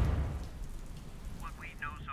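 The reverberant tail of a loud horror-score sting fades out, leaving a steady rain-like hiss. Near the end there are a few short wavering high-pitched sounds.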